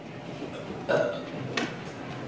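A person's voice making two short sounds without words, one about a second in and a shorter one a little after one and a half seconds.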